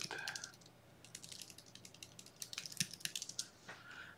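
Typing on a computer keyboard: a string of quick, light keystroke clicks, thickest in the middle and stopping shortly before the end.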